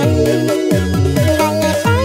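Vinahouse electronic dance remix with a steady beat, bass notes that slide downward over and over, and a wavering lead melody above.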